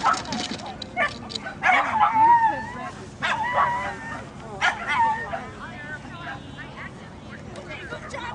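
A dog yipping and barking several times, short high calls that bend up and down in pitch, the loudest about two seconds in and again near three and a half and five seconds in; these are the squealing "pig noises" of an excited dog.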